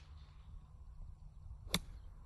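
A 58-degree wedge striking a golf ball on a 90-yard shot: one sharp click near the end.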